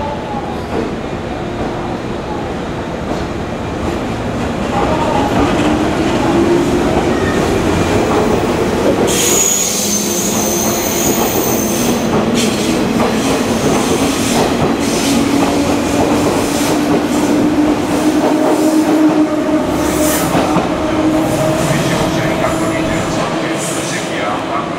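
A two-unit JR East 115 series electric train pulling out along the platform. Its motor hum rises in pitch as it gathers speed and grows louder as the cars pass. About nine seconds in, a high-pitched wheel squeal lasts around three seconds, and wheels click over rail joints as the last cars go by.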